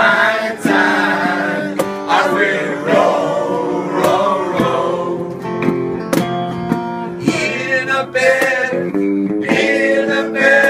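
Live acoustic guitar strumming with two male voices singing together in long held notes.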